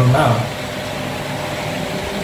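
A man's speech trails off, then a steady hum holds at one pitch and an even level.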